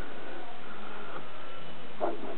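Steady, even hiss of the recording's background noise, with a few faint thin tones and no distinct event.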